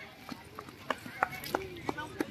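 Outdoor crowd with faint, scattered voices, broken by about six irregular sharp clicks and knocks over two seconds.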